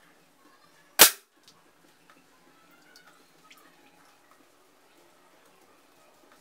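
A single sharp shot from a suppressor-fitted Caçadora PCP air pistol about a second in, dying away quickly.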